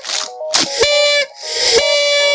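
Electronic music: a simple beeping melody with loud hissing blasts laid over it, each blast carrying a whistle-like tone, coming roughly once a second.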